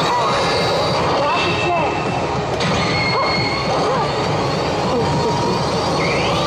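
Pachislot machine electronic sound effects over the loud, steady din of a slot parlor, with many short sliding and chirping tones and a few held high beeps.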